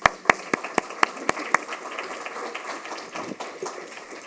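Applause from a room audience, fading away over the last second or two. One person's loud, evenly spaced claps close to the microphone, about four a second, stand out for the first second and a half.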